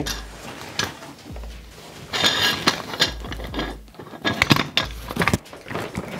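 Handling noise as a large parabolic softbox is fitted onto a studio light. Fabric and frame rustle through the middle, then a quick run of sharp plastic and metal clicks and clacks in the second half as the head is twisted onto the light's mount to lock it.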